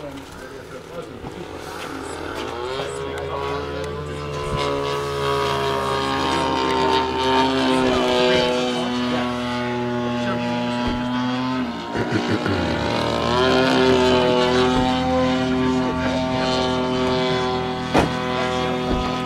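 Electric motor and propeller of an Airfield T-28 radio-controlled model plane running on the ground: a whine that climbs in pitch over the first few seconds and holds, drops briefly near the middle, then climbs again.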